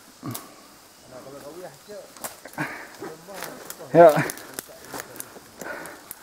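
Leaf litter and twigs crackling, with scattered sharp snaps, as a hiker crawls through dense jungle undergrowth. People talk quietly, and a voice says "ya" about four seconds in.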